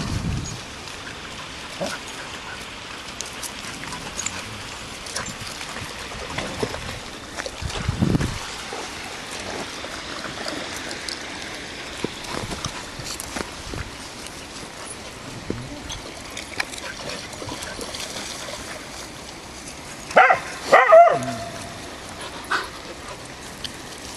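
A dog barks two or three times in quick succession near the end, over a steady outdoor hiss with scattered small knocks and handling noise.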